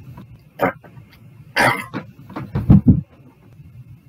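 A man's short, breathy huffs close to the microphone, followed by a quick cluster of low thumps about two thirds of the way in.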